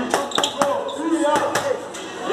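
Boxing gloves punching focus mitts: several sharp slapping smacks in quick combinations, one group near the start and another past the middle.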